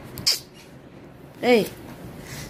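Speech: a woman calls "hey" once, about one and a half seconds in, her pitch rising then falling. A brief soft hiss comes near the start.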